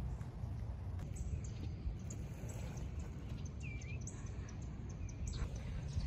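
Outdoor ambience: a steady low rumble with one short bird chirp about four seconds in.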